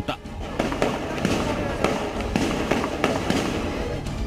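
Gunfire: a rapid, irregular string of shots over a dense crackling noise, with music underneath.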